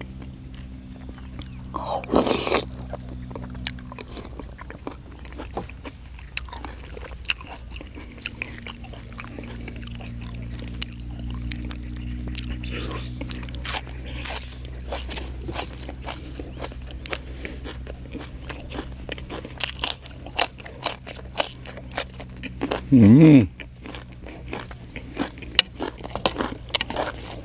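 Close-up chewing and crunching of rice noodles in green curry and raw fresh herbs and vegetables, with many short wet mouth clicks. A louder crunch comes about two seconds in, and a brief voiced sound comes near the end.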